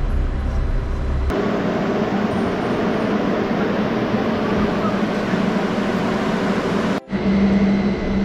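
Passenger ropeway (aerial cable car) machinery running at the station: a steady mechanical hum and rumble as the cabin passes through the sheave wheels. The sound changes abruptly about a second in and dips briefly near the end.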